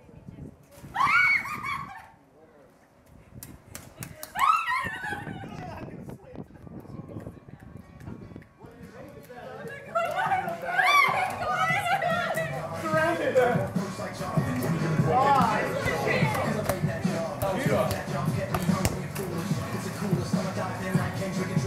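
Two short, high-pitched shouts or whoops from people playing, then background music comes in about halfway through and runs on louder, with voices faintly under it.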